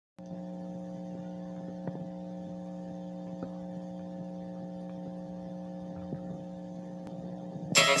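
Steady electrical hum in the recording, made of several constant tones, with a few faint clicks. Music starts loudly just before the end.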